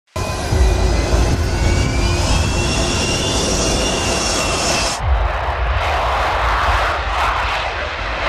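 Su-57 fighter's jet engines running, with a high whine that rises steadily in pitch over a deep rumble. About five seconds in it cuts to a louder rushing jet noise as the aircraft takes off.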